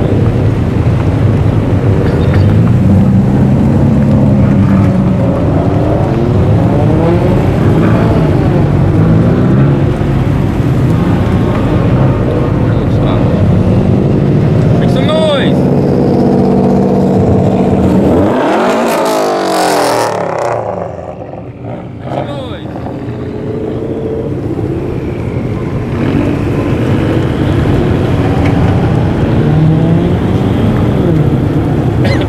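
Subaru cars with flat-four engines driving past one after another, engines revving as they go. About two-thirds of the way through one engine revs sharply up and falls away.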